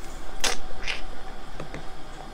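A few short clicks, the first and loudest about half a second in and fainter ones near the end, with a man starting to say "let's".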